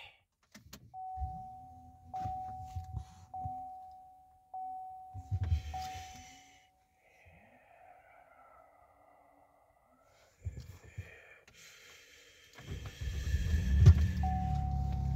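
Dash warning chime dinging five times about a second apart after the key is switched on. Near the end, the 2022 Chevy Colorado's 3.6 V6 cranks, fires right up and runs on at a steady idle.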